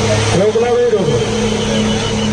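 Tractor engines running steadily under heavy load as two chained tractors pull against each other in a tug-of-war, over crowd noise. A man's voice calls out over it about half a second in.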